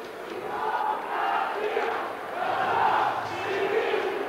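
A large street crowd chanting and shouting in swelling waves of voices, growing louder in the second half.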